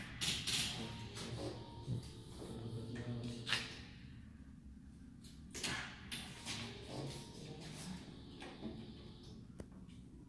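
Suzuki Bandit 1250F's inline-four engine idling with a low steady hum, with a few sharp clicks and knocks.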